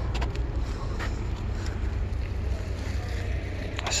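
Steady low rumble of wind on the microphone, with a few faint clicks, likely from hand tools on the moped's rear wheel.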